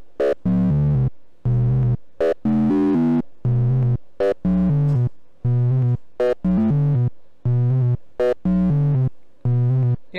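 Eurorack SSI2131-based VCO, linearly frequency-modulated by a second VCO's triangle wave, playing a sequenced run of short notes about two a second, the pitch and tone colour changing from note to note. Its sound comes close to, though it is not quite, Yamaha DX-style FM.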